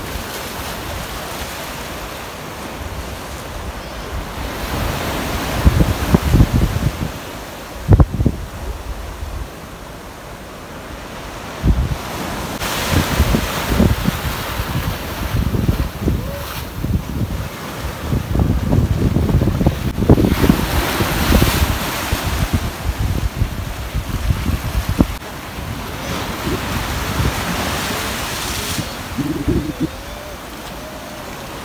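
Small waves breaking and washing in foam across a shallow coral reef flat at low tide, surging in repeated washes every few seconds. Wind buffets the microphone, with rough low rumbles and a few sharp thumps.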